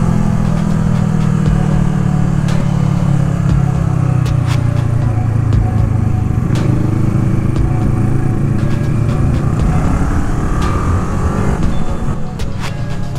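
Motorcycle engine running at road speed under a rider, heard close up from a handlebar-mounted camera, with a steady engine note that rises near the end as the bike accelerates.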